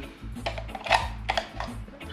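A few sharp plastic clicks and taps from handling a Hosa CBT-500 cable tester just after its 9-volt battery has been fitted, over low background music.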